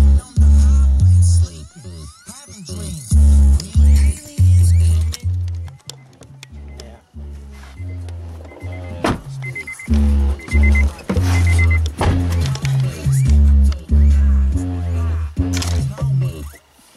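Bass-heavy music with a vocal, played loud through a car stereo's new JVC CS-V6937 rear-deck speakers and Pioneer DEH-15UB head unit; deep bass notes change every half second or so, thinning out briefly in the middle.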